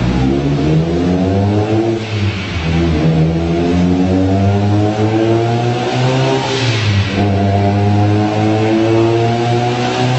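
Mitsubishi Lancer Evolution's turbocharged four-cylinder engine being run up under load on a chassis dyno, its pitch climbing in long pulls through the gears. The pitch drops at gear changes about two seconds in and again about seven seconds in, with a brief rush of hiss just before the second change.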